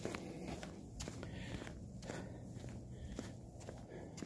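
Faint footsteps of a person walking on a concrete floor, about two steps a second.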